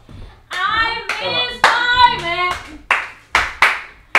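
A high voice singing in drawn-out, sliding notes, punctuated by sharp hand claps at roughly two a second; the claps carry on alone near the end.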